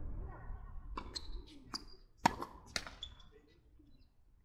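Tennis balls bouncing on a hard court and being tapped with rackets between points: about five sharp pops in two seconds, some with a short high ring after them, the loudest a little past two seconds in.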